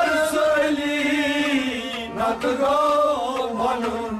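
Men singing a Kashmiri Sufi devotional song in chorus, drawing out long held notes over a steady harmonium drone.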